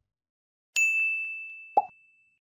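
Subscribe-button animation sound effects: a bright bell-like ding that rings out and fades over about a second, then a short click near the end as the animated cursor presses the subscribe button.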